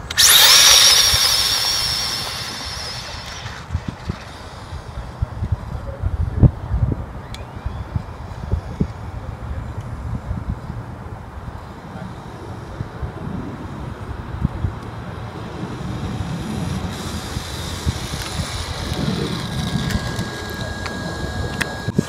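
Battery-powered RC drag car's electric motor and drivetrain whining loudly as it launches off the line, fading over about three seconds as the car runs down the track. After that there is wind and outdoor noise with scattered knocks.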